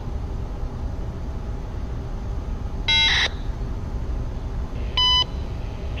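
Two short electronic beeps come over a radio, one about three seconds in and a cleaner, shorter one about two seconds later. They lead straight into a CSX trackside defect detector's automated voice broadcast. A steady low rumble runs underneath.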